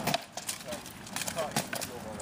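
Sharp knocks of rattan sword blows striking shields and armour: one at the start and a quick run of three or four in the second half. A man's voice speaks briefly between them.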